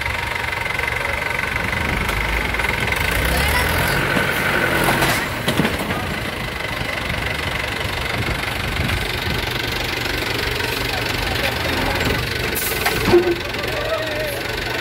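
Mahindra 475 DI tractor's diesel engine running steadily, louder for a few seconds from about two seconds in as the tractor manoeuvres. A short loud sound stands out near the end.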